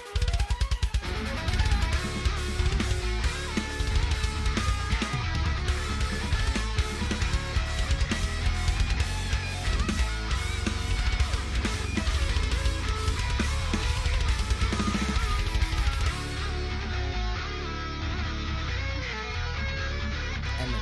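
Heavy metal track with distorted electric guitar over a DW drum kit played with fast, even double bass kick-drum strokes. The highest cymbal sizzle drops away near the end.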